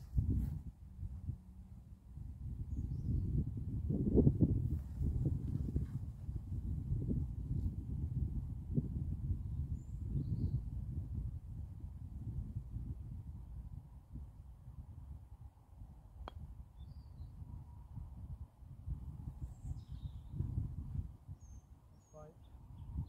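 Wind buffeting the phone's microphone as an uneven low rumble, with faint bird chirps now and then. About two-thirds of the way through there is a single crisp click of a golf club striking the ball on a short chip shot.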